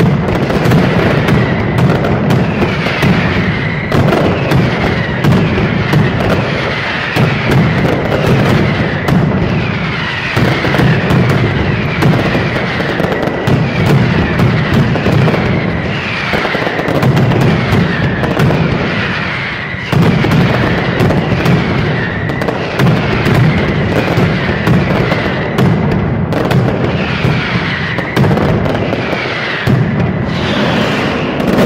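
Mascletà firing: a continuous, dense barrage of firecracker bangs with whistling fireworks falling in pitch over it, loud throughout. It eases briefly just before twenty seconds in, then comes back at full force.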